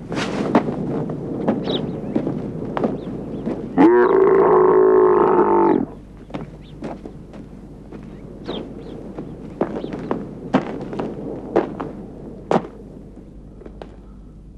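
A camel calls once, loud and drawn out for about two seconds, starting about four seconds in. Around it are rustling and scattered sharp clicks of dry brush being handled.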